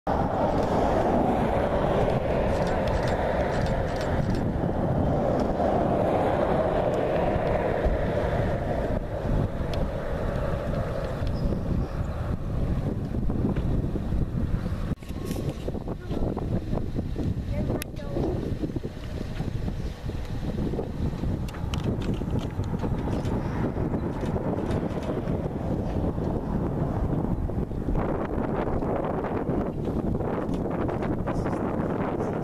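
Wind blowing across the microphone: a loud, steady rushing noise that dips briefly about halfway through.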